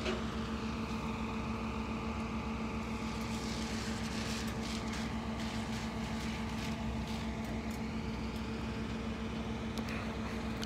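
Steady, even hum of idling vehicle engines, with a few faint ticks a few seconds in.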